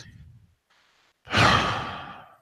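A person's loud sigh, a long breath out into a close microphone, about a second in, fading away. A short, faint breath comes just before it at the start.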